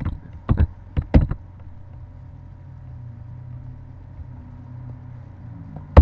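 A few quick computer keyboard keystrokes in the first second or so, then a steady low hum, and one loud keystroke at the very end as the spreadsheet formula is entered.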